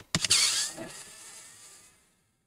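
Handheld electric screwdriver's small motor running briefly as it works a bottom-cover screw of a laptop, starting with a click just after the start and fading away toward the end.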